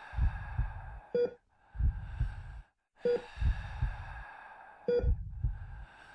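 Heart-monitor sound effect: a short beep about every two seconds, each followed by a run of low heartbeat thumps over a hiss, with brief silent gaps between repeats.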